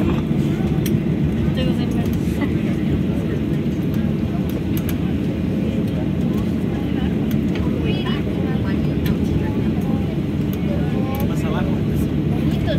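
Steady low rumble of a Boeing 737's cabin while the airliner taxis after landing, engines near idle, with faint passenger chatter over it.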